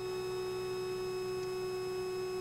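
Steady cabin drone of a Piper PA46 Malibu Mirage in flight, heard as a constant hum of several fixed tones that does not change.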